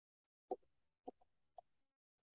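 Three faint clicks of computer keyboard keys being typed, about half a second apart, in otherwise near silence.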